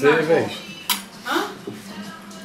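Cutlery clinking once, sharply, against a china dinner plate about a second in, among the sounds of people eating at the table, with a voice trailing off at the start.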